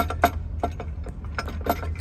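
Hand socket ratchet clicking in short, irregular strokes on the mounting bolts of a DD15 intake throttle valve. A steady low hum runs underneath.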